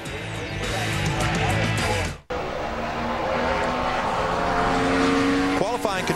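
A NASCAR stock car's V8 engine at full throttle on track, its pitch slowly rising. The sound breaks off sharply about two seconds in and comes back at once at the edit.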